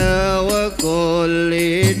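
A qasidah sung to hadroh frame drums: voices hold long sustained notes and move to a new note just under a second in, over light drum strokes.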